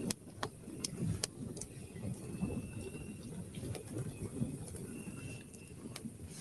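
Campfire crackling, with scattered sharp pops over a low, uneven rumble. A faint high tone comes and goes in the background.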